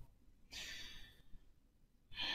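A man's soft, sigh-like breath out, lasting about two-thirds of a second and starting about half a second in.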